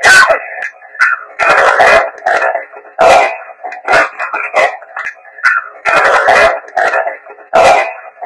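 A recording played on a handheld device: loud, choppy, radio-like bursts of sound and broken fragments, coming and going every half second to a second. On-screen captions read the fragments as the words "We know that", presented as heavenly music.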